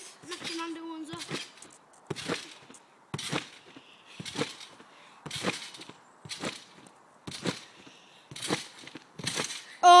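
Trampoline being bounced on: a sharp thump of feet landing on the mat about once a second, nine times in a steady rhythm.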